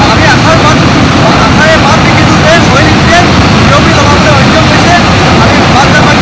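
Loud, steady roar of gas escaping and burning from an uncontrolled oil-well blowout, with a man's voice speaking underneath it.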